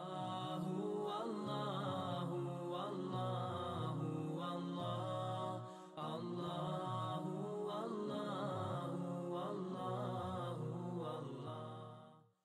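Outro music of chanted vocal tones, several voices holding long notes over a steady low drone. It breaks off briefly about halfway through, resumes, and fades out at the end.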